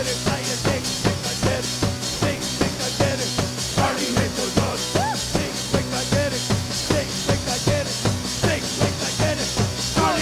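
Live band playing an instrumental passage: a fast, steady drum-kit beat with bass and mallet-keyboard notes, and pitched notes that bend up and down over the beat.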